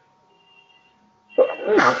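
A faint steady electrical hum, then about one and a half seconds in a man's sudden, loud explosive burst of breath and voice close to the microphone.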